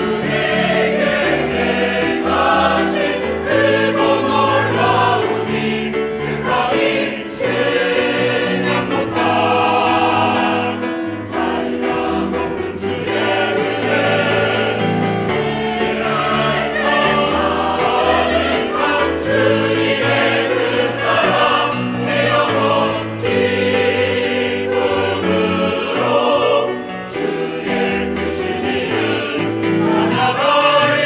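Mixed church choir of men and women singing a hymn in Korean, full voice and continuous.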